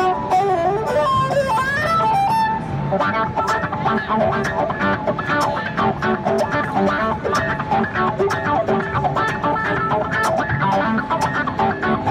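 3Dvarius Line five-string electric violin played with a bow: a sliding melodic phrase for the first couple of seconds, then a fast, rhythmic run of short notes.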